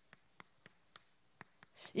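Chalk writing on a chalkboard: about seven short, sharp taps and scratches at an uneven pace as characters are stroked onto the board. A woman's voice starts speaking near the end.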